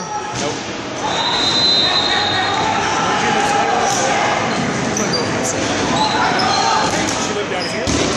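Dodgeballs bouncing and smacking on a gym floor amid players' shouts, ringing with the echo of a large hall, with a short high squeak about a second and a half in.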